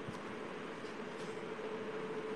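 Steady hiss with a faint steady hum and no speech: background line noise of an online audio-call recording.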